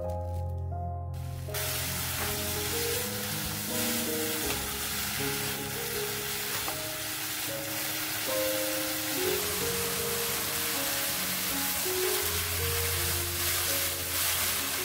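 Bracken fern stems sizzling as they are stir-fried on high heat in a frying pan. The sizzle starts about a second and a half in and then runs on steadily, under background music.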